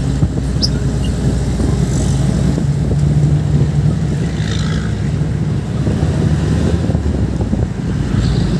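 A jeepney's diesel engine runs with a steady low drone, heard from inside the moving vehicle together with road and wind noise. A brief, fainter higher-pitched sound rises over it about halfway through.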